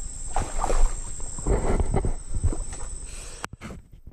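Irregular knocks and rustling with a deep rumble from a camera being handled and moved on a riverbank, with a sharp click near the end.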